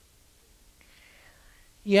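A pause in a man's speech: near quiet, with a faint soft breath-like sound about a second in, then his voice comes back at the very end.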